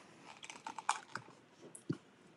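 Faint, scattered light clicks and rustles of craft supplies, a paper towel among them, being handled on a tabletop, with one short soft thump just before the end.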